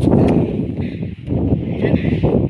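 Wind buffeting a phone microphone, a loud rumbling gust that starts with a sharp click and runs on in uneven surges.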